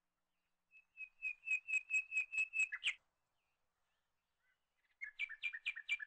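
A small bird chirping: a run of about ten short, high notes at roughly five a second, then after a pause a second, quicker run of two-pitched notes near the end.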